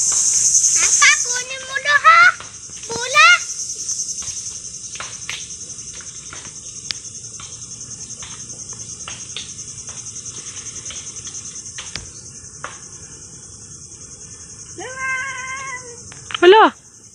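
A steady high-pitched insect drone, loudest in the first second and then quieter. A few short rising calls come about two to three seconds in, scattered light clicks and snaps run through it, and a brief held voice-like call sounds just before the end.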